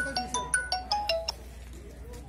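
A ringtone-style melody of quick, bright bell-like electronic notes, about six a second, that stops abruptly about 1.3 seconds in, leaving a low hum.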